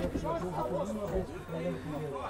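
Quiet background chatter of men's voices.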